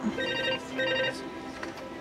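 A telephone ringing in the British double-ring pattern: two short rings about a quarter of a second apart. Background music runs underneath.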